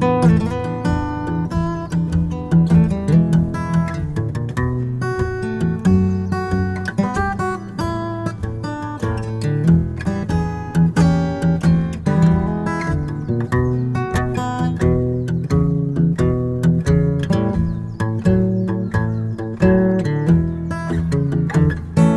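Steel-string acoustic guitar playing a solo blues in F: picked melody notes and chords over a repeating bass line.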